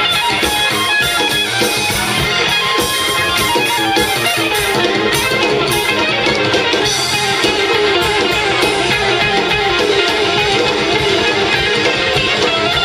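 A live rock band playing loudly, with electric guitar lines up front over bass and drums.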